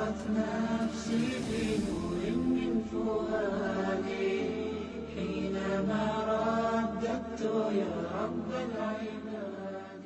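Chanted vocal music: a voice singing a slow melodic line, with a brief hissing swish about a second in, fading out near the end.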